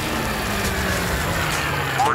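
Cartoon sound effect of a hose nozzle blasting out pink foam: a loud, steady rushing hiss with a low rumble underneath.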